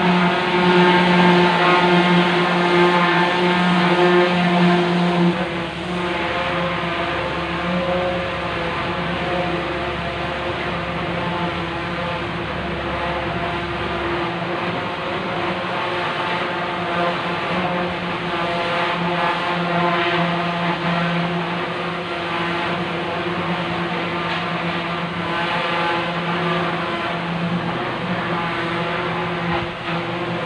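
Boat engine running steadily, a low drone with an even pitch that eases slightly in level about five seconds in.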